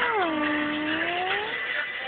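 A baby's drawn-out vocal sound, one long call that rises, dips and climbs again over about a second and a half, over background music.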